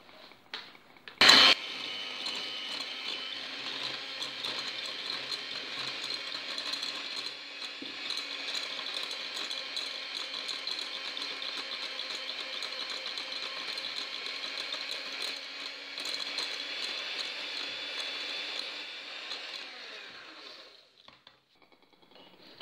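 Electric hand mixer creaming butter and sugar in a glass bowl: a sharp click as it is switched on about a second in, then a steady motor whine that stops about a second and a half before the end.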